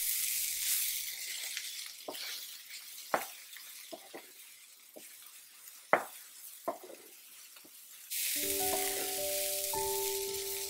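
Diced ivy gourd (tindora) frying in oil in a non-stick pan, sizzling as a spatula stirs it, with a few sharp knocks of the spatula against the pan. The sizzle drops away in the middle and comes back loud about eight seconds in.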